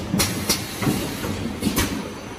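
Automatic piston filling and capping line for 1–5 litre plastic laundry-detergent bottles running: irregular sharp clacks and knocks from the machinery and bottles on the conveyor, about five in two seconds, over a low steady rumble.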